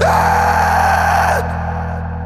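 Post-metal band music: distorted guitars and cymbals under a high, wailing held note that slides down. About one and a half seconds in, the full band cuts off, leaving a low sustained chord ringing and slowly fading.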